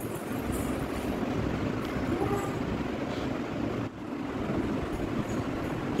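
Steady low rumbling background noise in the room, dipping briefly about four seconds in.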